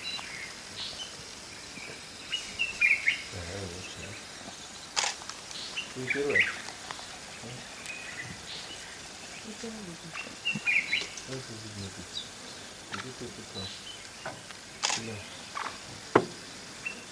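Birds chirping in short bursts every few seconds, over faint low voices and a couple of sharp clicks.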